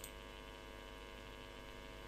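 Faint, steady electrical mains hum in the recording's microphone chain, with a faint mouse click right at the start.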